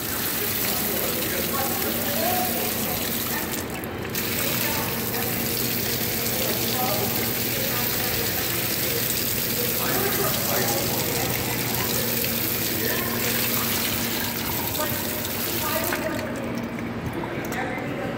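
Foot-wash shower head spraying a steady stream of water onto bare feet and a rubber mat. The spray dips briefly about four seconds in and stops near the end.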